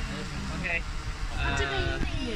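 Meituan multirotor delivery drone hovering overhead, its propellers humming steadily, with people talking near the end.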